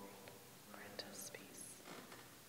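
Faint whispered speech: a priest quietly saying the private prayer before Communion, with a few soft hissing s-sounds.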